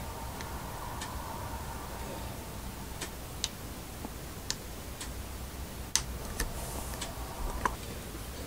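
Faint, irregular ticks and clicks, roughly one or two a second, over a steady low hiss; the sharpest clicks come about six seconds in and just before the end.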